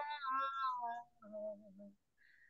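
A woman's singing voice in a Hindi devotional bhajan, heard over a video call, trailing off after a held note into short, broken fragments. A softer low note comes about halfway through, then the voice stops near the end for a pause between lines.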